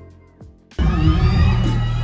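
Live R&B concert music over a venue sound system, quiet at first with a light ticking beat. About three-quarters of a second in it jumps suddenly to much louder music with heavy bass and a cheering crowd.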